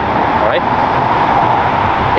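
A steady, even rushing background noise, with one short spoken word about half a second in.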